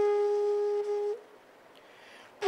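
Bamboo bansuri (Indian transverse flute) holding one long, steady note that ends a little over a second in.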